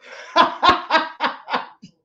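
A man laughing, in about five quick bursts that stop just before the end.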